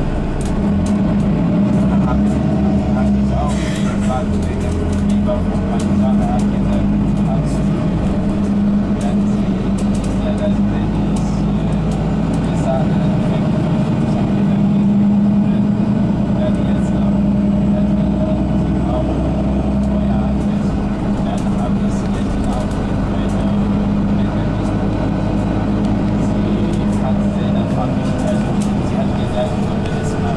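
Interior sound of a Mercedes-Benz Citaro G articulated city bus under way: a steady engine and road drone with a deep rumble that shifts in level a few times as the bus drives on, and light rattles and clicks from the cabin.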